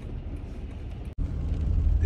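Steady low rumble of a car's engine and road noise heard inside the cabin while driving. It drops out suddenly for an instant about a second in and comes back a little louder.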